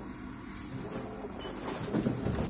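Supermarket checkout conveyor belt running with a steady mechanical drone, under shop background noise.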